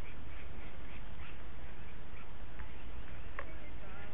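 Grey-headed flying-fox giving a few faint short squawks as it is netted in the tree, over a steady low rumble.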